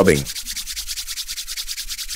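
Hands rubbing briskly back and forth to warm a smartphone battery, a fast, even run of dry rubbing strokes.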